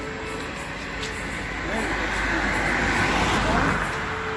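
A road vehicle passing close by: a noise of tyres and engine that swells from about a second and a half in, is loudest a little after three seconds, and eases off near the end.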